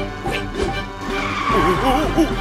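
Bemo tyres skidding as the vehicle brakes hard, a screech building about a second in, over background music.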